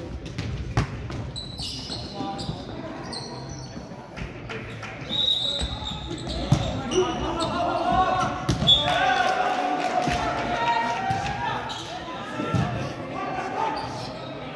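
Volleyball rally in an echoing gymnasium: sharp hits of the ball, the loudest about a second in as the serve goes over, then more ball contacts through the rally. Short high sneaker squeaks on the hardwood floor and players' shouts, busiest in the second half.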